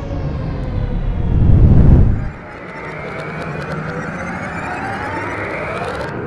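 Sci-fi intro sound effects: falling tones over a low rumble that swells to its loudest and cuts off abruptly about two seconds in, then a whine of several pitches rising steadily toward the end, with faint high ticks.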